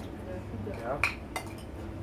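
Metal spoons scraping and clinking against ceramic plates and bowls as food is scooped up, with a couple of sharp clinks just past the middle, the first the loudest.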